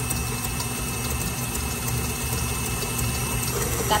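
Electric stand mixer running at a steady speed, its beater whipping cake batter in a stainless steel bowl: an even motor hum with a faint high whine.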